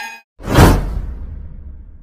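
An edited whoosh sound effect swells up sharply about half a second in, with a deep rumble under it, then fades away over the next second and a half. Just before it, the last of a sustained synth music chord cuts off.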